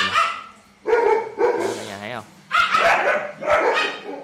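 A dog vocalizing in three bursts, the longer two each lasting about a second.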